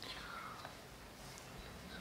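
Quiet room tone with faint whispering voices.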